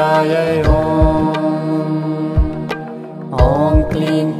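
A voice chanting a Sanskrit mantra in a slow devotional melody over music, with a sustained drone underneath and low drum beats about once a second.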